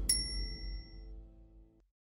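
A single bright, bell-like ding that rings out and fades over about a second, over the last low notes of the background music dying away.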